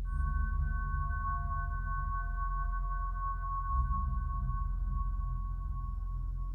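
Electronic music from modular synthesizers: a group of steady high tones sets in right at the start and holds, over a sustained low drone.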